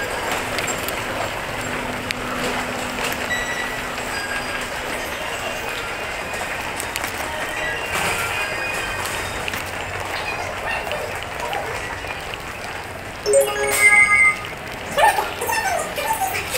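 Busy train station ambience: crowd footsteps and bustle over a steady hum. Near the end, a loud electronic chime of several tones sounds, followed by brief pitched, voice-like sounds.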